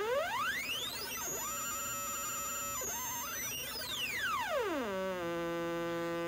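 Behringer Neutron's digital LFO run as an audio-rate oscillator, its rate swept up to a high, thin pitch over about a second and a half, held there, then swept back down to a low steady tone about five seconds in. At the top, aliasing adds extra tones that slide against the main pitch: digital artifacts of the LFO's high range.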